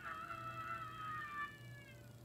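A boy's long, high-pitched scream, sliding slightly down in pitch and fading out near the end, heard from a TV speaker.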